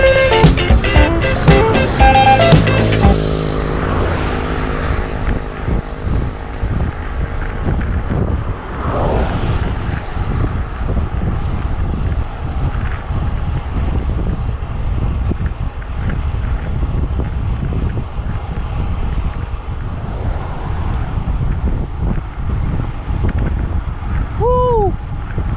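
Background music that cuts off about three seconds in, followed by a steady rush of wind on the microphone of a road bike moving at about 35 km/h.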